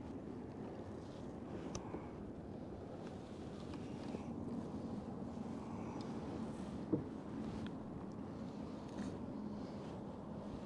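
Steady, low rushing noise of wind and water around a small aluminium fishing boat, with a few faint clicks and one sharper click about seven seconds in.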